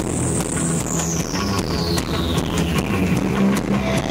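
Live rock band playing, with electric guitar, bass guitar and drums. A high tone slides steadily down in pitch over about the first three seconds.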